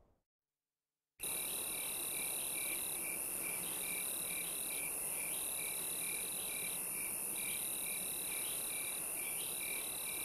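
Night chorus of crickets and other insects, starting abruptly about a second in. A steady high-pitched ringing runs under a chirp pulsing about two to three times a second, and a higher trill starts and stops every second or two.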